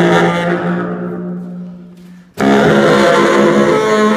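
Bass saxophone and hurdy-gurdy improvising. A low held note fades away over about two seconds, then several sustained tones come in suddenly and loudly about two and a half seconds in.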